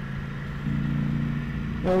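Ducati Panigale V4S's 1,103 cc V4 engine running steadily in third gear at a light cruise of about 50 to 57 km/h. Its note fills out with extra higher tones about half a second in.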